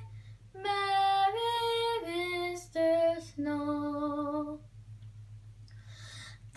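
A young girl singing a show tune unaccompanied: a phrase of about five held notes, mostly stepping down in pitch, then a pause of about a second and a half near the end.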